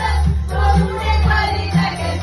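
A woman singing into a microphone over loud amplified backing music with a heavy bass beat about twice a second.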